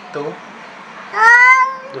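Angry black cat letting out one loud, drawn-out meow that rises slightly in pitch, starting about a second in and lasting under a second.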